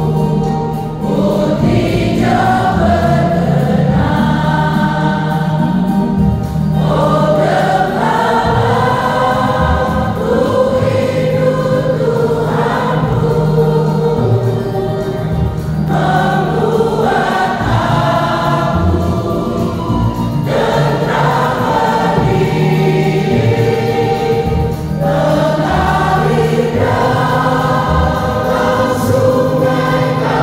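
A mixed church choir singing a hymn in phrases of a few seconds, with short breaths between them, over a steady low held note.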